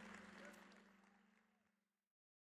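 Near silence: faint room noise fading away in the first second, with a low steady hum underneath.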